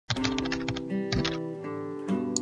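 Computer keyboard typing clicks, a quick run and then a few more about a second in, over sustained intro music.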